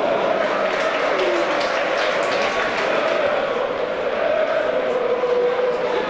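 Football stadium crowd of supporters chanting and singing steadily, many voices blended into a held, wavering tune over general crowd noise.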